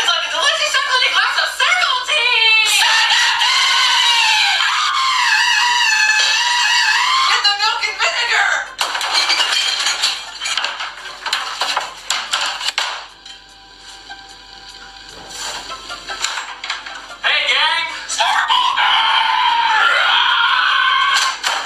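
High-pitched, wavering voices over music, with several quick rising and falling pitch sweeps; it drops quieter for a few seconds about two-thirds of the way through, then comes back.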